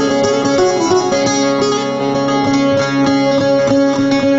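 Bağlama (long-necked Turkish saz) playing a quick plucked melody over ringing sustained notes, an instrumental passage between the sung verses of a Karbala lament.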